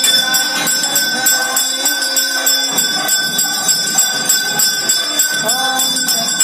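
Temple bells ringing continuously in a quick, even pulse of about four strokes a second during the lamp offering (aarti), with voices underneath.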